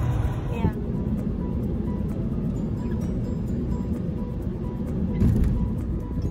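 Steady road and engine rumble inside a moving car's cabin, swelling louder for a moment about five seconds in.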